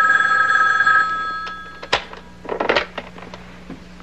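Desk telephone ringing with a steady two-tone ring that fades and stops just under two seconds in, followed by a sharp click as the handset is lifted.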